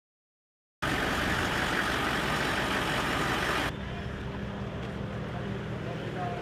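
Silence for nearly a second, then a loud, steady rushing noise. A little before four seconds in it drops to a quieter, steady vehicle engine hum.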